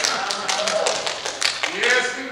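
A man's voice preaching, with a quick, uneven run of sharp taps over it several times a second.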